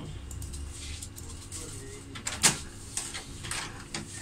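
Epson L120 inkjet printer printing a print-head alignment sheet: its mechanism runs with a low motor hum in the first second, then several sharp clicks and knocks, the loudest about two and a half seconds in.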